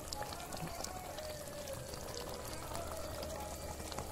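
Chicken curry gravy simmering in a kadhai over a gas flame: a steady soft patter of many small bubbles popping and sputtering in the thick liquid.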